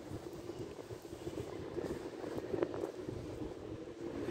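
A steady, engine-like mechanical hum in the open air, with a single short tick about two and a half seconds in.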